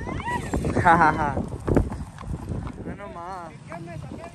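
A horse whinnying with a quavering call about a second in and again near the three-second mark, over the clopping of hooves.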